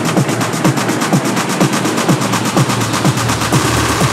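Techno music: a fast, even percussion pattern of about nine hits a second over pitch-falling drum strokes, with almost no deep bass.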